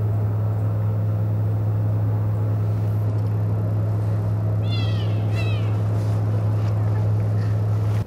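Loud, steady low electrical hum. Two short, high calls with falling pitch come about five seconds in.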